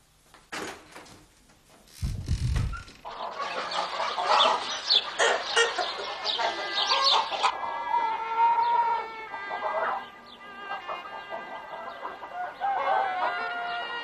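A flock of hens clucking busily, starting about three seconds in after a few clicks and a short low thump. About halfway through, background music with long held notes comes in, and scattered clucks go on beneath it.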